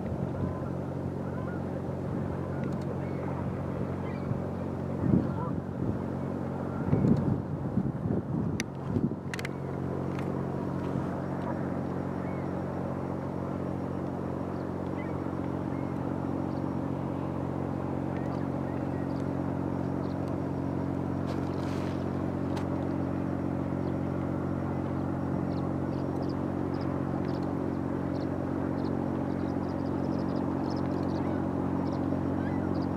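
The lake freighter Tecumseh's engines running as it passes: a steady low drone made of several held tones, growing a little louder near the end as the ship's stern comes closer.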